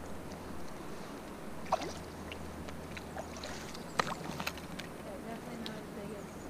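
Faint river water lapping and sloshing at the shallows, with a few short sharp clicks.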